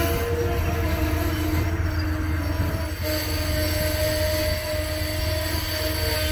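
Amtrak passenger cars rolling past at track speed: a steady low rumble of wheels on rail, overlaid by sustained squealing tones from the wheels.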